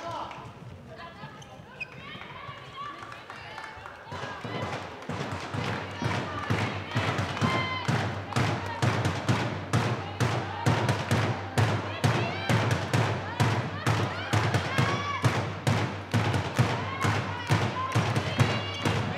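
Handball game in a sports hall: a ball bouncing and thudding on the floor with players' footfalls, short knocks coming several times a second from about four seconds in and getting louder, with players' voices calling out.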